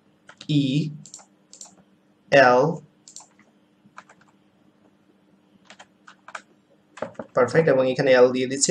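Computer keyboard typing: separate, spaced-out keystrokes as characters, quotation marks and commas are entered one at a time. A faint steady hum runs underneath.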